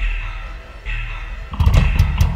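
Opening of a heavy metal song: a guitar chord struck and left to ring, repeated about once a second. About one and a half seconds in, the full band comes in louder, with bass, guitars and drum hits.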